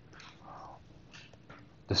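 Faint scratches and taps of a stylus writing on a tablet screen, a few short strokes. A spoken word begins right at the end.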